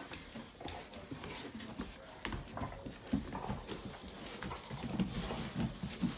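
Boxer dogs sniffing and scuffling at the edge of a bed, with short snuffles and scattered clicks and knocks throughout.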